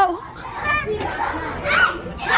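A young child's high voice calling out twice in short bursts, amid the sound of children playing.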